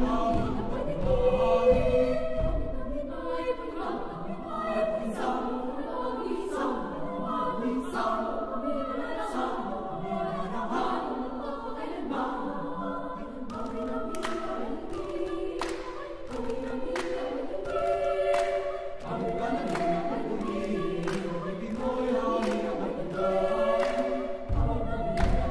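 Children and youth choir singing a slow sacred song in several parts, with sustained chords.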